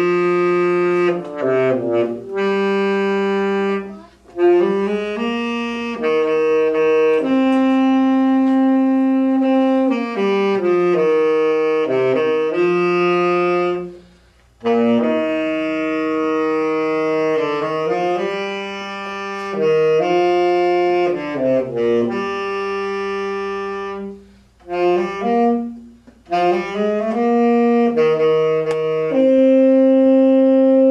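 An unaccompanied saxophone playing a jazz solo, mostly held notes linked by quick runs. The phrases are broken by short pauses about four, fourteen and twenty-five seconds in.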